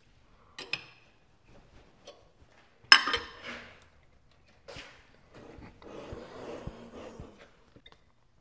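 Metal clinks and knocks as a wrench works the clamp bolts on a tool and cutter grinder's grinding head while the head is rotated to a new angle, with one sharp clank about three seconds in and a rougher scraping stretch later on.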